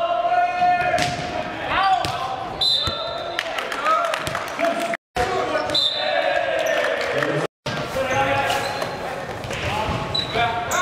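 Volleyball rally in a gym: the ball is struck with sharp smacks on serves, passes and hits, while players and spectators shout and call out. The sound cuts out completely for a moment twice, about halfway through and again near the end.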